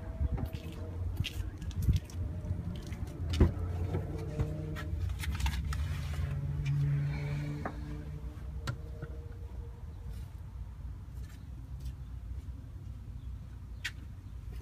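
Scattered knocks, clicks and rustles of someone climbing into a car and handling a phone camera inside the cabin, over a steady low hum.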